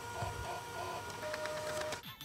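Desktop photo printer printing: a steady mechanical run with small repeated blips, and a short steady tone toward the end.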